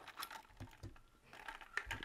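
Faint, irregular light clicks, a handful scattered over two seconds.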